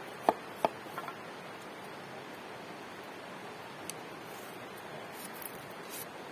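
A machete chopping into a bamboo stick: two sharp strikes in the first second, then a couple of faint taps, after which only a steady low hiss remains.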